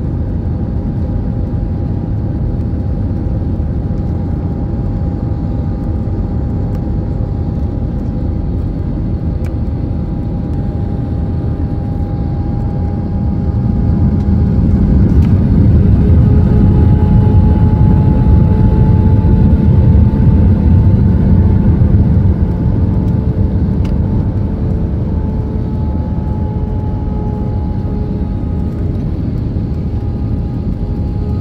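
Jet airliner cabin noise at a window seat during the descent: a steady rumble of engines and airflow with two faint steady engine tones above it. The rumble swells louder for several seconds midway, then settles back.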